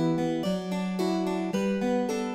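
A Court Harpsichord loop from Logic Pro X's loop library playing a medieval-sounding melody, its notes changing about every half second.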